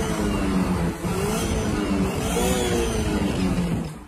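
Car engine revving up and down several times, its pitch rising and falling, heard from inside the cabin.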